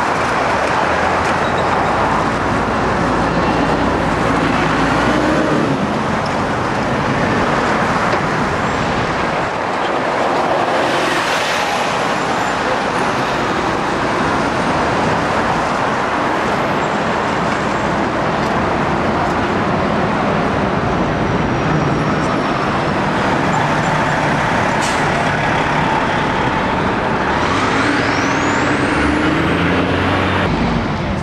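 Busy city street traffic: a loud, steady wash of engines and road noise, with no single vehicle standing out. A faint, high rising whine sounds a couple of seconds before the end.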